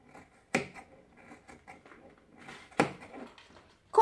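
Household sewing scissors cutting knit fabric: two sharp snips of the blades closing, about half a second in and near the three-second mark, with faint fabric rustle and scraping in between. The blades chew the knit rather than cutting it cleanly.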